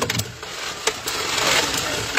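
Two Beyblade spinning tops whirring and scraping across the plastic floor of a Speedstorm Motor Strike stadium, with a few sharp clicks as they knock together and against the walls, over the hum of the stadium's motor-driven spinning centre disc.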